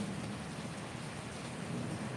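Steady, even hiss of background noise with no speech and no distinct events.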